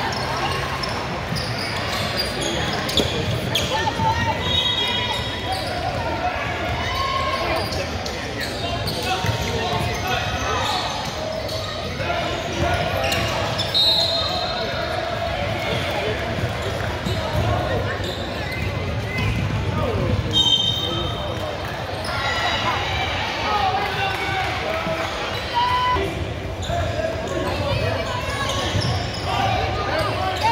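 Basketball bouncing on a hardwood gym floor, with indistinct voices of players and spectators echoing in a large hall. A few short high squeaks rise above the din.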